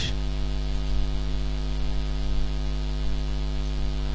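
Steady electrical mains hum with a stack of overtones, under a light hiss, continuing unchanged.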